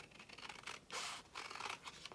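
Small scissors snipping through a thin book page, several quiet cuts in a row.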